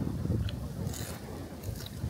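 Tortilla chip being bitten and chewed, a few faint crunches about half a second and a second in, over a low rumble of wind on the microphone.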